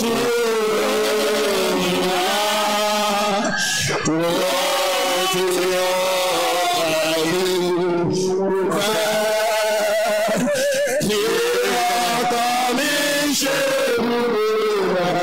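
A congregation praying aloud all at once, many voices calling out and wailing over one another in a continuous loud din.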